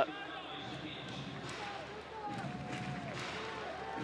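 Faint voices of people talking in the background over a low, steady ambient noise.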